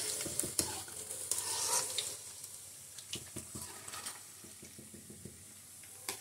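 Semolina-and-potato rolls deep-frying in hot oil in a kadhai, sizzling with scattered crackles, growing quieter over the last few seconds.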